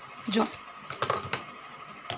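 Scissors snipping thread beside a sewing machine: a few short, sharp clicks spread over two seconds, over a faint steady hum.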